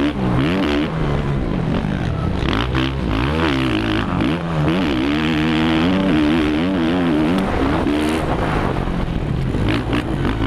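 Four-stroke Suzuki RM-Z450 motocross bike engine at race pace, its revs rising and falling over and over as the throttle is worked, with a steady rush of wind and track noise on the helmet-mounted camera.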